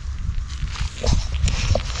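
Footsteps crunching irregularly through dry leaf litter and twigs on a woodland path, with a few short pitched blips between about one and two seconds in.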